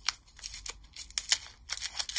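Gloved hands unwrapping a soy wax melt bar from its paper wrapper: a run of irregular crinkles and crackles.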